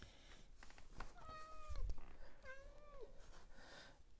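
A cat meowing twice, about a second apart. The second meow curves up and then drops in pitch at its end.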